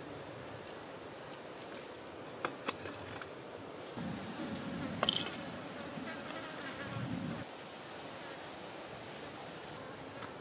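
A steady high insect drone from the surrounding forest, with a buzzing insect flying close about four seconds in and again near seven seconds. A few light knocks from the cleaver and coconut-shell bowls on the wooden table come in between.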